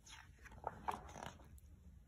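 Faint rustle and soft flips of a picture book's paper page being turned by hand.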